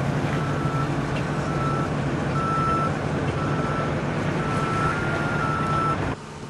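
A heavy vehicle's reversing alarm beeping about once a second over the steady running of truck and heavy-equipment engines at a landfill working face.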